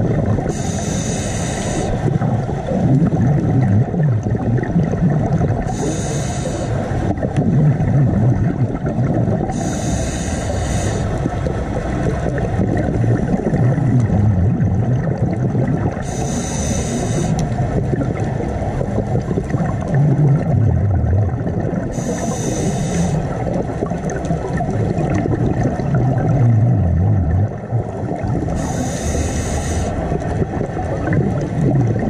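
Scuba diver breathing through a regulator underwater: a hiss of exhaled bubbles about every six seconds, six times, over a steady low underwater rumble.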